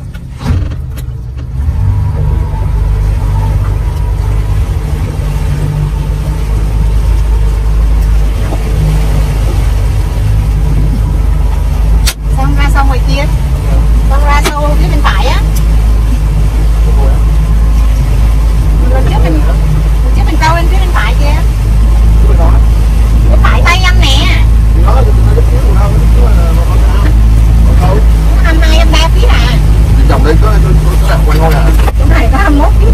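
Small motorboat under way at speed, heard from inside its cabin: a loud, steady engine and hull drone that comes in about two seconds in and grows a little louder later on.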